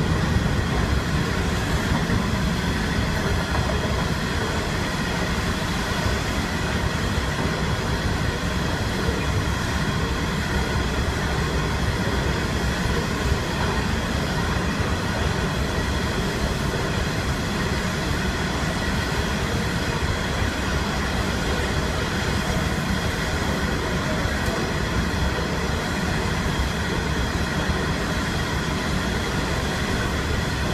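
Coal train's hopper wagons rolling steadily past, a continuous rumble and clatter of wheels on the rails with a faint steady whine over it.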